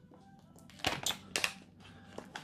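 A few short, sharp crinkles and clicks of a hemp flower package being handled, starting about a second in, over faint background music.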